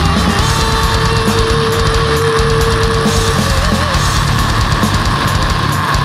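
Heavy metal song with distorted electric guitars over dense drumming and no vocals. A long held high guitar note gives way about halfway through to a short wavering one.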